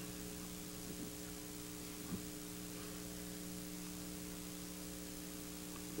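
Steady electrical mains hum with faint tape hiss on an old videotape recording, with two faint ticks about one and two seconds in.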